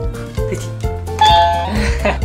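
A quiz buzzer toy's red circle (correct answer) button sounding a two-note ding-dong chime about a second in, high note then low, as its circle sign pops up. The chime plays over background music.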